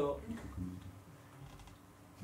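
Light typing and key clicks on a laptop keyboard.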